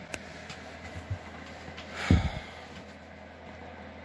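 Steady low room hum, with one short, sharp breath through the nose close to the microphone about two seconds in.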